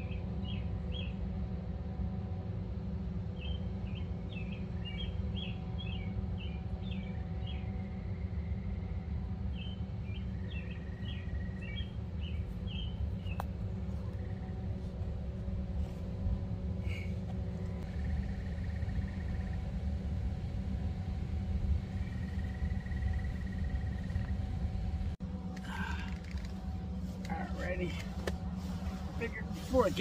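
A nearby machine humming steadily and low, with faint steady tones above the hum and no break or change. Quick runs of short high chirps come through over it near the start and again around ten seconds in.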